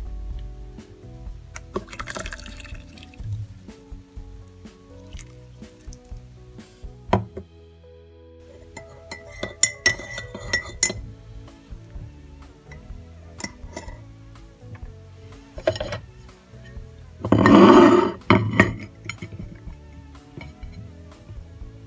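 Background music, with a metal teaspoon clinking against a ceramic mug as tea is stirred about ten seconds in. Near the end comes a louder clatter of crockery as the mug is moved onto a ceramic plate.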